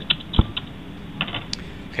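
A Bunsen burner being lit and handled: a few short sharp clicks and one dull knock about half a second in, with a few more clicks after about a second.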